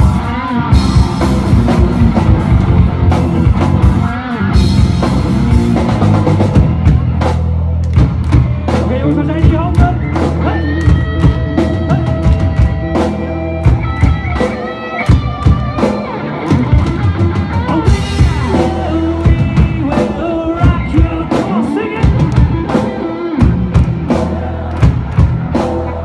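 Live rock band playing loudly: drum kit, bass, electric guitars and keyboard, with a steady drum beat and sustained bass notes.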